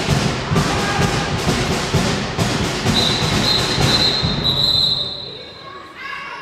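Crowd noise in a sports hall with repeated thumps, then a referee's whistle in one long blast about three seconds in, after which the noise dies down.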